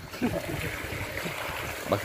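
Water from a pump hose running and trickling into a field-rat burrow, flooding it to flush the rats out.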